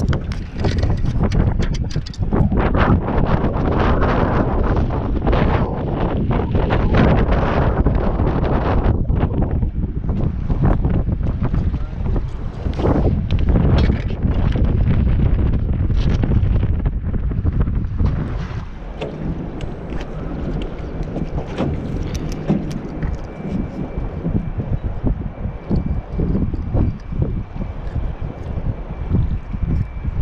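Wind buffeting the camera microphone in an open boat: a loud, gusty rumble that eases a little after about eighteen seconds.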